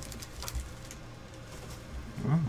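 Quiet handling of trading cards on a desk: a soft tap about half a second in, over a low steady hum.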